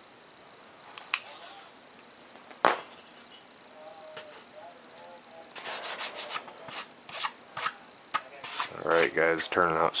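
Hands rubbing and handling the foam-board airframe of a model jet: a run of short scuffs and rubs in the second half, with a single sharp tap about three seconds in. A man's voice comes in briefly near the end.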